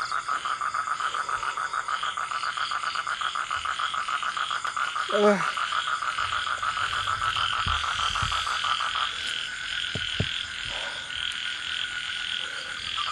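Frogs calling at night in a fast, pulsing chorus. The quickest trill stops about nine seconds in while other calling carries on.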